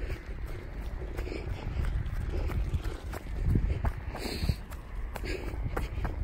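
A runner's shod footsteps thudding on grass at a run, with thumps from the hand-held camera bouncing along.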